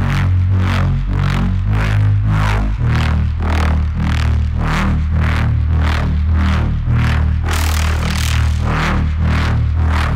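reFX Nexus 4 software synthesizer playing the 'Dark Wob 2' wobble-bass preset: a deep bass note with a bright filter sweep pulsing about twice a second. The bass note changes about three seconds in.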